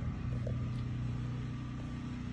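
A steady low mechanical hum with a faint tick or two in it.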